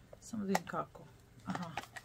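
A few light clicks from a white plastic soap box being handled, among brief bits of a woman's voice.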